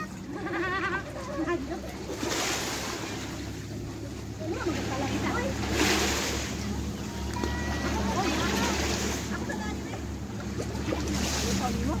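Sea water sloshing and splashing close to the camera in several swells, over a steady low hum, with faint voices of people in the water.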